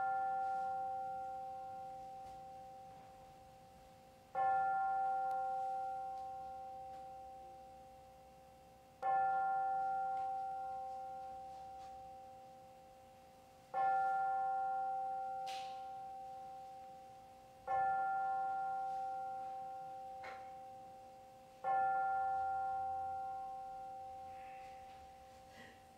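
A bell struck at slow, even intervals, about every four to five seconds, five times. Each stroke rings one clear tone that fades slowly into the next.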